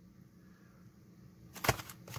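Faint room tone, then a short burst of sharp crinkles and clicks near the end as a plastic mailer bag is handled.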